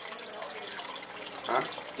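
Steady background hiss of room noise between lines, with a single short spoken 'Huh?' about one and a half seconds in.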